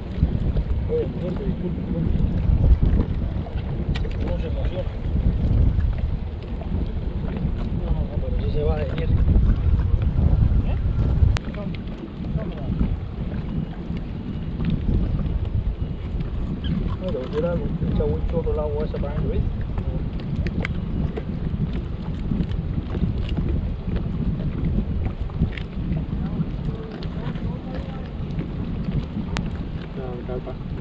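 Wind buffeting the microphone as a loud, uneven low rumble, heaviest in the first ten seconds or so and easing after that, with faint voices twice.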